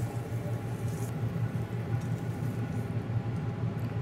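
Steady low hum and hiss of a restaurant kitchen's gas char-grill and exhaust hood running, with no distinct knocks or clatter.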